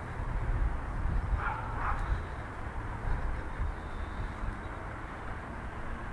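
Outdoor park ambience dominated by a steady low rumble of wind on the microphone, with one brief distant animal call about a second and a half in.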